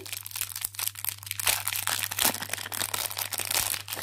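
Thin clear plastic wrapper crinkling and crackling as fingers handle it, a continuous run of small irregular crackles.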